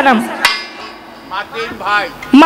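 A single sharp knock about half a second in, between the end of a woman's spoken phrase on a stage microphone and a few short bits of voice near the end.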